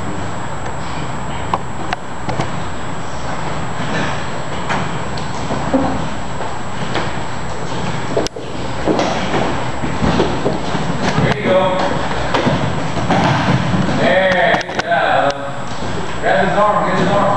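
Two jujutsu practitioners grappling on mats: gi fabric rustling and bodies shifting and thumping against the mat. Voices talk in the room, clearest near the end.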